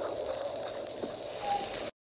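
Oil sizzling steadily under tofu-skin pork rolls frying on an electric griddle, a hissing sound that stops abruptly near the end.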